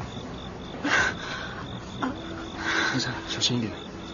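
Crickets chirping in a steady, evenly pulsed high trill, with a few louder short noises over it, about a second in and again near three seconds.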